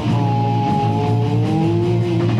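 A heavy metal band playing live: distorted electric guitars and bass under one long held note that bends slowly in pitch.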